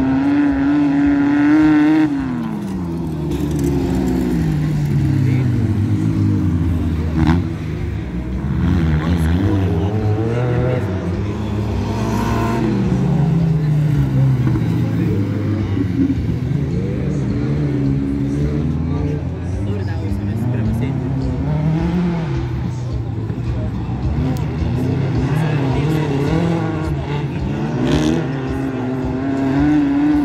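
Off-road racing buggy engines revving hard and dropping back, over and over, as the buggies accelerate out of corners and brake into them on a dirt track. The pitch climbs and falls every few seconds.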